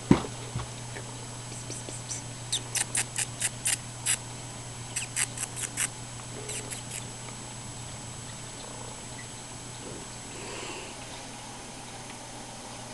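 A person making quick, soft "pss-pss" hissing calls to a cat, in three runs of short strokes about four or five a second, after a sharp knock right at the start.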